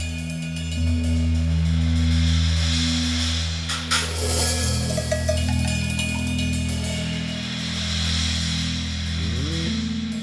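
Live rock band playing a slow intro in free time: long held low bass and guitar notes swell and fade under washes of cymbal and scattered hand-percussion hits. There is a sharp percussion hit about four seconds in, and a bass note slides upward near the end.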